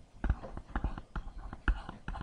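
Quick, irregular clicks and taps with soft whispering under them, starting about a quarter second in.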